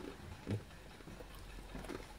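Faint chewing and mouth clicks of someone eating fried chicken, with a few soft clicks and a brief low sound about half a second in.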